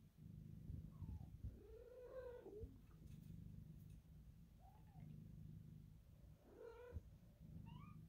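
A domestic cat purring softly and steadily, with short meows over it: a long arching meow about two seconds in, a brief one near five seconds, and two rising calls near the end. The purring comes from a mother cat lying among her three-week-old kittens.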